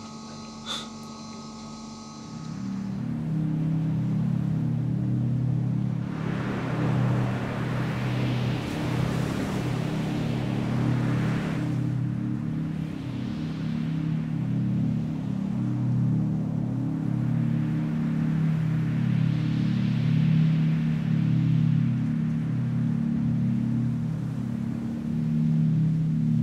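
A low, droning film score: deep sustained notes that shift slowly, starting about two seconds in, with several long swells of rushing noise rising and falling over it.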